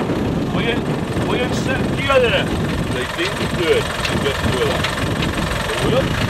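Land Rover Defender engine idling steadily, with people talking over it.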